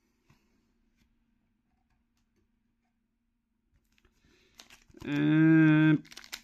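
Mostly quiet, with a faint steady hum and a few soft ticks of cards being handled. About five seconds in, a man's voice holds one steady hummed note for about a second.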